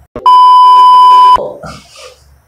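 A loud electronic bleep tone: one steady, single-pitched beep lasting just over a second, cut off abruptly.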